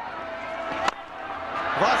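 A single sharp crack of a cricket bat striking the ball about a second in, lofting it into the air, over the steady murmur of a stadium crowd. Commentary begins near the end.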